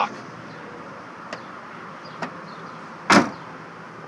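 A 2014 Honda Ridgeline's dual-action tailgate being shut: a single loud clunk about three seconds in, after two faint clicks, over a steady outdoor hiss.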